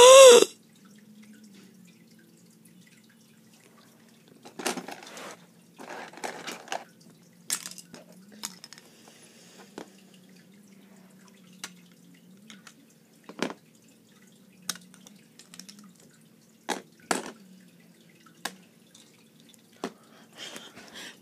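Scattered short clicks and taps, with a few brief rustling bursts, over a faint steady low hum.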